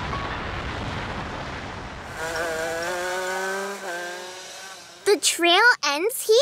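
Cartoon race-car sound effects: a rushing whoosh, then a steady engine-like tone for a couple of seconds. About five seconds in come short vocal cries that glide up and down.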